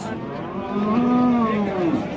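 A bull moos once: one long, low call that rises a little and falls away near the end.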